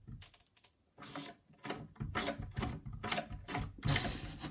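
Chrome lever door handle being worked up and down, its latch mechanism clicking and rattling, sparse at first and then quicker from about halfway. The handle won't work: it moves but the latch does not free the door.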